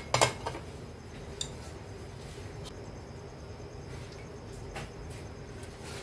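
Steady low hiss of a gas stove burner heating an empty wok, with one sharp metal clink of the wok or utensils just after the start and a few faint taps later.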